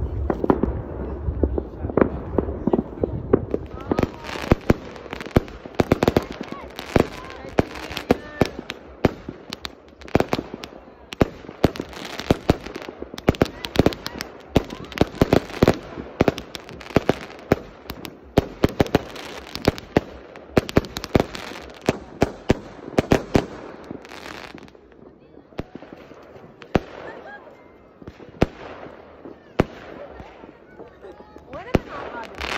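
Many aerial fireworks going off at once: a dense, continuous run of sharp bangs and crackles that thins to scattered bangs in the last few seconds.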